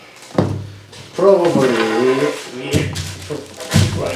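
A man's wordless humming voice that bends in pitch, with three knocks of hard plastic massage-machine parts being handled and set down on a table.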